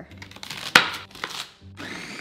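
Celery stalks being dropped into a plastic food processor bowl and the lid fitted, with a sharp click about three-quarters of a second in and another a moment later; near the end the food processor's motor starts running.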